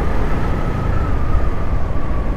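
Wind rushing over the microphone of a moving motorcycle, with its engine running underneath and a faint thin whine that drifts slightly down in pitch.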